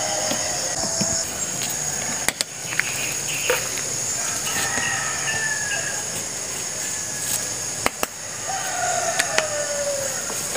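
A rooster crowing, with one long falling crow near the end, over a steady high-pitched drone. A few sharp plastic clicks come from a knapsack sprayer being handled.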